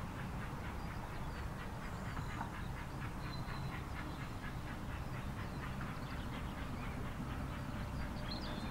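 LMS Black Five 44932, a two-cylinder steam locomotive, working hard at a distance: a quick, even rhythm of exhaust beats over a low rumble.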